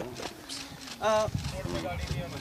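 Voices of people gathered around, with a short spoken phrase about a second in and another near the end, and a few soft low knocks between them.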